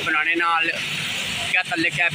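A man talking over the steady running of a diesel dump truck's engine. The voice drops out for about a second in the middle, leaving the engine sound on its own.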